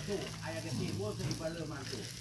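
Beef satay skewers sizzling softly on a wire grill rack over a charcoal fire, with a faint voice in the background.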